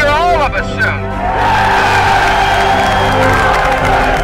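A man's voice shouting through a bullhorn for about the first second, then a crowd cheering and whooping over steady background music.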